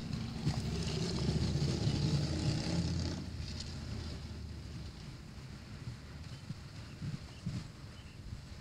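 Low outdoor rumble, strongest for about the first three seconds and then fading to a quiet, even background hum.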